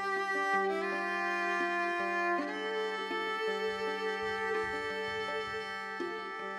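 Slow bowed string music: long sustained notes over a steady low drone, the melody shifting every second or so, with a rising slide about two and a half seconds in.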